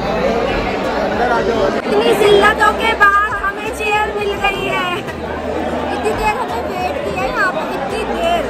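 Chatter of a crowded restaurant dining hall: many voices talking over one another, with a few nearer voices standing out now and then.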